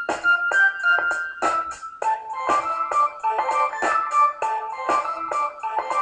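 Hip-hop drum loop and a pitched melodic loop playing back together from Reason's Dr. Rex loop players at 100 BPM, with evenly spaced drum hits under a keyboard-like melody.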